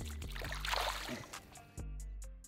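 Background music with a steady beat, over which a largemouth bass splashes in shallow water as it is let go, a brief watery surge about half a second in.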